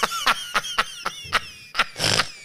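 A man laughing hard, a run of short breathy bursts at about three or four a second.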